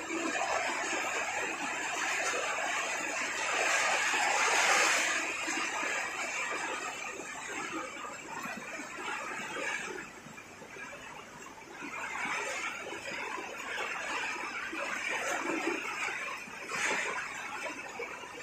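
Heavy rain pouring steadily with a dense hiss. It eases briefly about ten seconds in, then picks up again.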